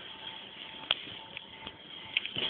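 Quiet room noise with faint rustling and a faint steady high hum, broken by one sharp click about a second in.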